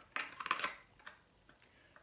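Scallop-edged craft scissors cutting through greeting-card stock: a quick run of crisp snips in the first second, then a couple of faint clicks as the blades are realigned.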